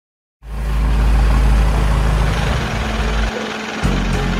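Deep, steady, engine-like rumble opening the first rap track, starting after a brief silence and dropping out for about half a second near the end.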